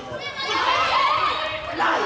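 High-pitched shouts and calls from several young female voices in a large sports hall, starting about half a second in.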